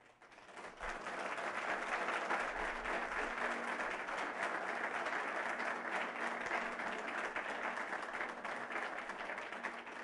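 Audience applause that swells up within the first second and then holds steady.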